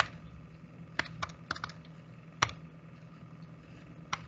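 Keys being pressed one at a time: about six sharp, irregular clicks in the first two and a half seconds, the last one the loudest, as numbers are keyed in.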